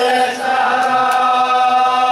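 A man chanting a mournful Arabic elegy for Husayn through a microphone: a brief break about half a second in, then one long held note.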